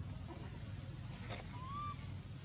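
Small birds chirping, several brief high twittering notes in the first half, then a single short rising whistle near the end, over a steady low background rumble.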